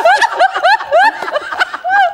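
A woman laughing hard: a quick run of short, rising, high-pitched laughs, about three to four a second.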